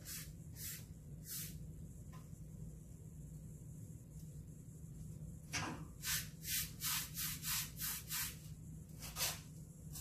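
A paintbrush stroking watered-down chalk paint onto a wooden headboard. There are a couple of single swishes at first, then a quick run of about eight strokes, roughly three a second, about halfway in, and one last stroke near the end.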